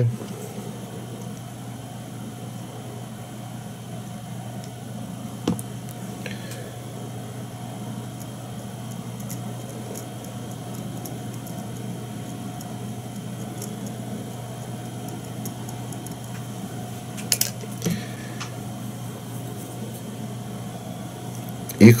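A steady low electrical hum, with a few faint clicks and taps of small hand tools during fly tying.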